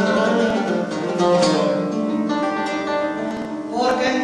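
Live flamenco: an acoustic flamenco guitar accompanies a woman singing a long, held, ornamented vocal line without clear words.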